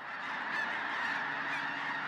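A huge flock of snow geese calling all at once as it lifts off the water, a dense, steady wall of overlapping honks.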